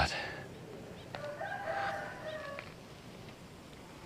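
A rooster crowing once, faintly, about a second in: one drawn-out call of about a second and a half that steps up in pitch partway through.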